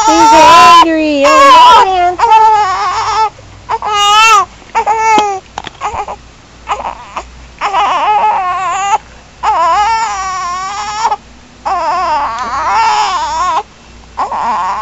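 A one-month-old baby crying: a run of high, wavering wails broken by short breaths, loudest in the first two seconds, then longer drawn-out wails in the second half.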